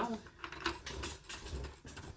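A quick, irregular run of light clicks and knocks from handling a dress on a dress form as it is moved away.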